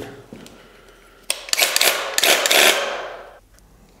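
Graco TC Pro cordless handheld airless paint sprayer triggered for a test spray: its pump runs with a hiss of atomizing paint for about two seconds, starting a little over a second in and then fading out.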